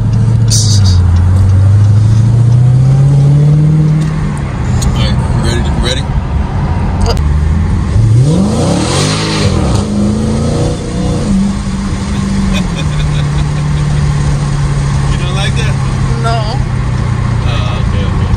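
Dodge Challenger SRT Hellcat Redeye's supercharged 6.2-litre V8 heard from inside the cabin while driving: the engine note dips, then climbs as the car accelerates over the first few seconds. About halfway through it sweeps up and down in pitch, then drops to a steady lower note as the car settles into a cruise.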